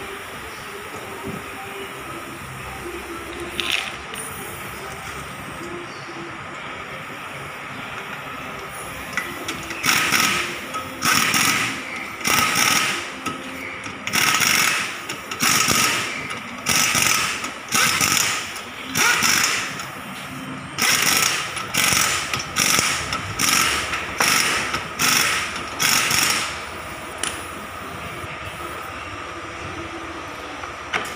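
Ratchet wrench worked in a run of about fifteen quick strokes, a short burst of clicking roughly once a second, after about ten seconds of steady background noise.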